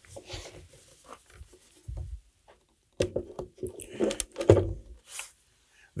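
Handling noise as a QSC K12.2 powered PA speaker cabinet is lifted and set onto a tripod stand's pole: rustling and scuffing, a soft thud about two seconds in, then a few sharper knocks in the second half.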